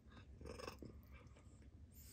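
A cat purring faintly while a hand strokes its head, with one brief, slightly louder sound about half a second in.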